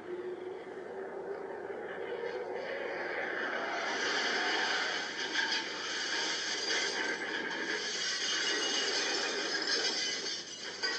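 Rushing aircraft-in-trouble sound effect that grows louder over the first four seconds and then holds steady.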